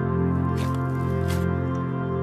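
Slime being pressed and worked, squishing twice, about half a second in and again near the middle, over steady background music.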